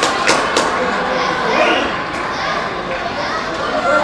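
A few voices shouting and cheering a goal in a near-empty football stadium, with two sharp claps in the first second.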